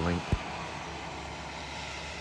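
One sharp knock about a third of a second in, then a steady hiss of outdoor background noise.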